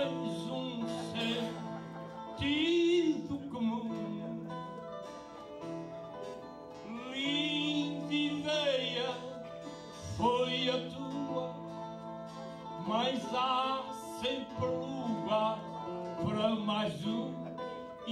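Portuguese cantoria: a man sings improvised verse in long phrases with vibrato, over steady plucked-guitar accompaniment that carries on between the phrases.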